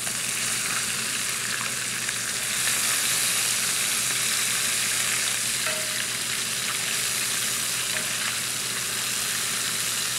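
Flour-dusted meatballs frying in hot olive oil in a cast-iron skillet, a steady, even sizzle. A few faint clinks come from metal slotted spoons as the meatballs are turned over.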